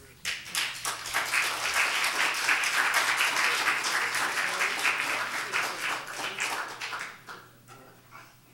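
A small church congregation applauding. The clapping starts suddenly just after the opening, holds strong, then dies away over the last second or so.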